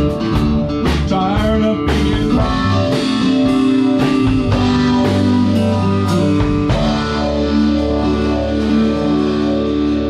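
Acoustic guitar and drum kit playing an instrumental passage of a country song. The drum strikes stop about seven seconds in, leaving held notes ringing.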